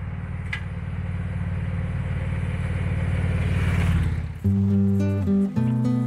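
Touring motorcycle engine running as the bike rides toward the camera, growing steadily louder. About four seconds in it cuts off and acoustic guitar music begins.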